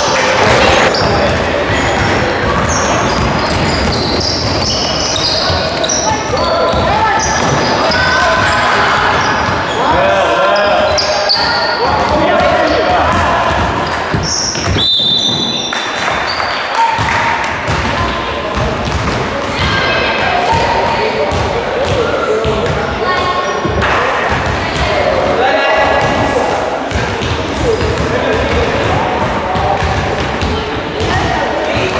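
Indoor basketball game: sneakers squeaking on a wooden court, the ball bouncing, and players' indistinct calls echoing in a large gym. About halfway through, a referee's whistle blows once, held for about a second.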